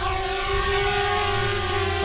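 DJI Spark quadcopter's motors and propellers running with a steady whine as the drone takes off and hovers.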